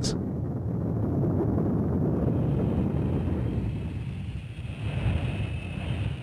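Jet aircraft engine noise: a steady low rumble, with a faint high whine coming in about two seconds in.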